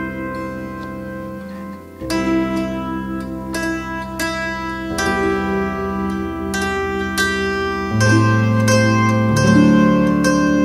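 Zither music: a melody plucked on the strings, each note ringing on over held bass notes. Near two seconds in the playing thins for a moment, then picks up again, and a louder, deeper bass comes in about eight seconds in.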